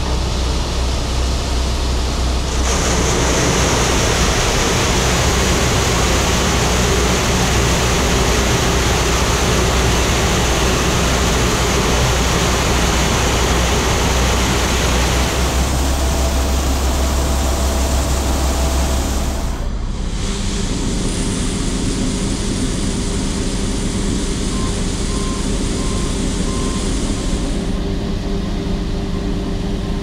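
Combine harvester and unloading augers running close by while filling a grain trailer with corn: a loud, steady rushing noise over a low hum. The sound changes abruptly about two-thirds of the way through.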